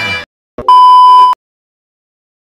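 Music cuts off, and after a brief click a single loud electronic beep sounds at one steady pitch for under a second, then stops abruptly.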